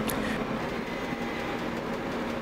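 Steady low background rumble with a faint, even hum running under it.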